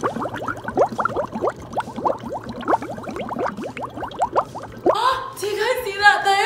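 Dry ice bubbling in water inside a jack-o'-lantern: a rapid, irregular run of gurgling bubbles, each rising a little in pitch. It is the dry ice turning straight into carbon dioxide gas as it takes heat from the water.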